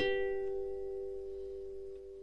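Background music: a chord on a plucked-string instrument left ringing and slowly fading, with no new notes struck.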